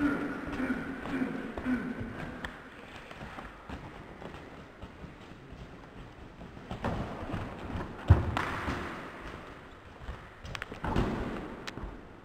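Wrestlers' bodies thudding onto gym mats, with one sharp, heavy thud about eight seconds in, the loudest sound, as a wrestler is slammed down. Softer knocks and scuffles of grappling come before and after it.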